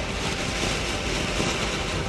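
A ground fountain firework (anar) spraying sparks with a steady hiss.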